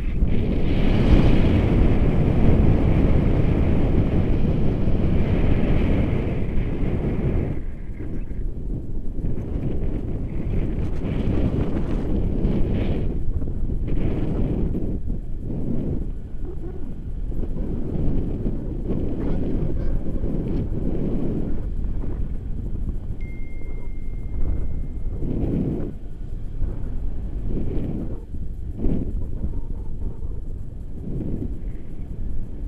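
Wind buffeting an action camera's microphone in tandem paraglider flight: a loud, gusty rumble, strongest for the first seven or eight seconds, then rising and falling unevenly.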